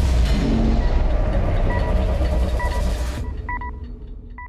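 Trailer score and sound design: a loud, dense low rumble with percussion that cuts off suddenly about three seconds in. Short electronic beeps follow, one pair near the end.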